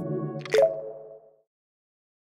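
The last chord of a synthesized intro jingle dies away, with a short water-drop 'plop' sound effect about half a second in. It fades out within about a second and a half, leaving silence.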